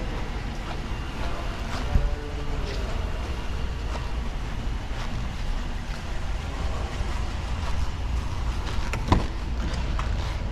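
A steady low rumble with a short knock about two seconds in, then a sharp click about nine seconds in as the SUV's rear door latch is pulled open.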